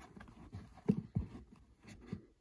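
A hand handling a fitted baseball cap on a shelf: short rubbing and brushing sounds of the cap's fabric and brim, the loudest about a second in.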